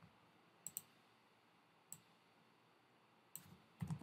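A few faint, scattered clicks from a computer keyboard and mouse as code is edited: a quick pair near the start, one about two seconds in, and a few more near the end, with near silence between.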